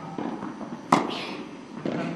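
Tennis ball struck by a racket: one sharp crack about halfway through, with a short echo from the indoor hall.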